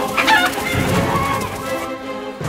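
Orchestral cartoon background score, loud and busy. A short, high, wavering call sounds over it in the first half-second.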